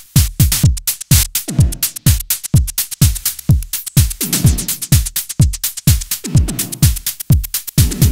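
Techno drum beat built from raw drum samples recorded off a Behringer Pro-1 analog synthesizer. A kick with a fast downward pitch sweep lands about twice a second, with hi-hat ticks between the kicks and an occasional tom.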